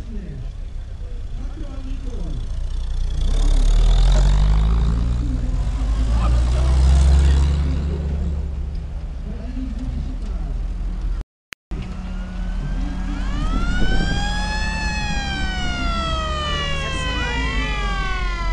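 Military jeep engines running low as the jeeps drive slowly past, swelling twice. After a break, a siren winds up and slides back down in pitch in overlapping wails, with a steady high tone joining in.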